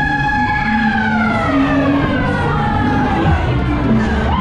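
A loud siren-like tone, held steady, then sliding down in pitch over about two seconds, over loud fairground ride music.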